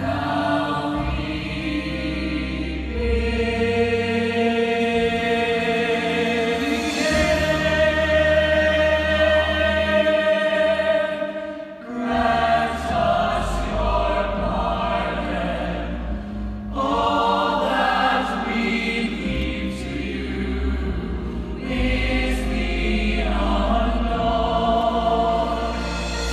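Stage-musical choir singing long held chords over an instrumental accompaniment, with a short break about twelve seconds in before new phrases enter.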